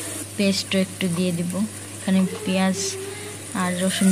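Onions and spices frying in oil in a non-stick pan, a steady sizzling hiss under the talk, as ginger paste is spooned in and stirred with a wooden spatula.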